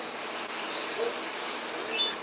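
Steady background hiss of room noise, even and unbroken.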